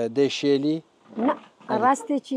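Speech: a voice talking in short phrases, with brief pauses between them.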